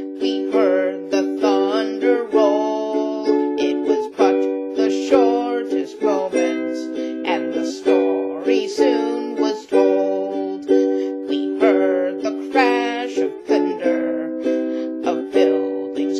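Ukulele strummed in a steady rhythm, with a woman singing a slow folk ballad over the chords.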